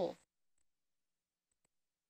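A voice finishes a sentence in the first quarter second, then near silence broken only by three faint ticks, one about half a second in and two close together about a second and a half in.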